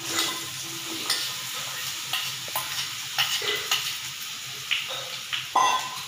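Raw green mango pieces dropped into hot tempering oil in a wok, sizzling and frying, with scattered clicks as pieces and the steel bowl touch the pan. There is a brief louder clatter with a short ring near the end.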